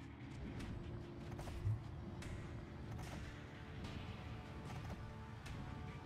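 Quiet music and sound effects from online slot games playing in the background, with a few faint clicks.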